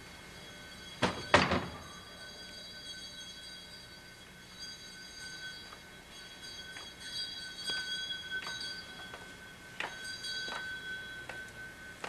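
A door being pulled shut: two sharp knocks about a second in, followed by scattered light taps and clicks over a faint steady high tone.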